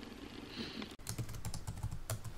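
Typing sound effect: a quick run of keystroke clicks begins about a second in, as the on-screen text is typed out letter by letter.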